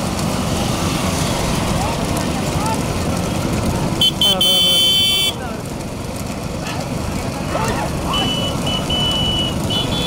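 Steady din of many motorcycles riding behind racing bullock carts, mixed with people shouting. About four seconds in a loud, shrill high tone sounds for just over a second, and shorter shrill tones come again near the end.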